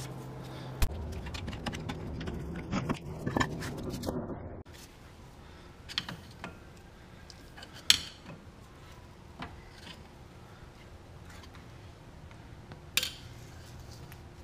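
Light metallic clinks and taps of hand tools and parts being handled at a car's front brake and wheel hub, scattered and irregular, the sharpest about eight seconds in and again near thirteen seconds.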